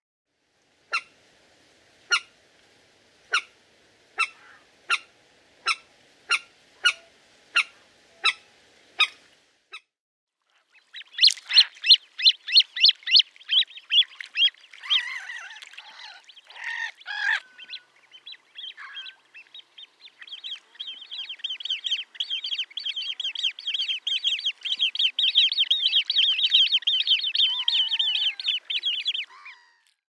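A common moorhen giving about a dozen short, sharp calls that come faster and faster. Then a great crested grebe calling with a loud, rapid chattering trill, broken up for a few seconds and then long and unbroken until near the end.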